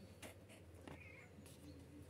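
Near silence with a faint domestic cat meow about a second in, and a few soft clicks.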